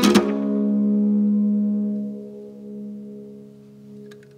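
Final chord of a song strummed once on an acoustic ukulele and left to ring out, fading slowly over a few seconds.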